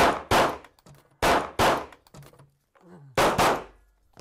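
Pistol fired in quick pairs of shots: six shots in three double-taps, each shot followed by a short echo off the walls of an indoor range.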